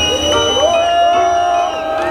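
Large festival crowd cheering and singing a long held note together, with a high steady whistle-like tone over it.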